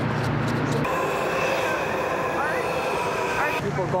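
A Metro train's steady whine, several held tones under faint voices, which cuts off abruptly about three and a half seconds in.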